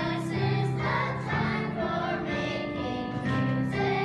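A children's choir singing in unison, with steady held notes of instrumental backing underneath.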